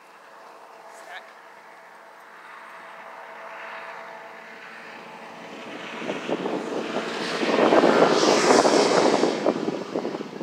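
A propeller airplane's engine overhead, growing steadily louder to a peak near the end before easing off.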